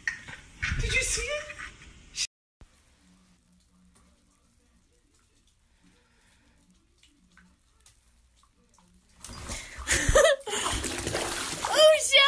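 Voices and laughter for about two seconds, then near silence. About nine seconds in comes loud splashing of bathwater as a cat falls into a filled bathtub and thrashes, with voices over it.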